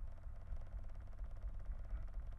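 A steady low electrical hum with a faint buzz over it, the background noise of the recording.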